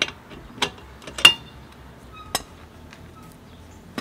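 A few short, sharp metallic clinks, spaced irregularly, as the aluminum socket and loosened lug nut are handled at a steel car wheel. The loudest clink comes about a second in and rings briefly.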